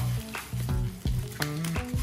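Bubble wrap being ripped open and crinkled by hand: a run of sharp crackles, over steady background music.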